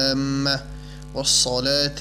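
A voice chanting the Arabic supplication recited after the call to prayer, in a drawn-out melodic style. A long held note ends just after the start and a short note follows. After a breath, a new phrase rises in pitch near the end, over a steady low mains hum.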